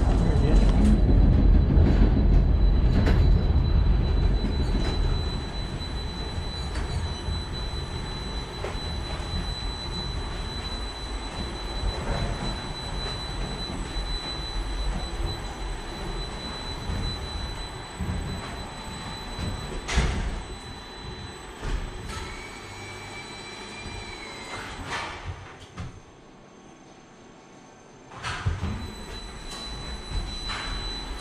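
Rail-guided lift car of the Ascensore Castello d'Albertis-Montegalletto running along its track in a tunnel: a loud low rumble at first, easing into a steadier running noise with a few sharp knocks. A brief high whine comes near the end, then the noise dies down almost to quiet before picking up again.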